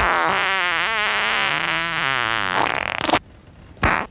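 Whoopee cushion sat on and going off at last: a long, wavering, raspy buzz lasting about three seconds, then two short bursts near the end.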